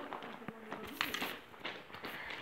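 Faint voices of people talking at a distance, with a few sharp steps or clicks on the gravel track bed.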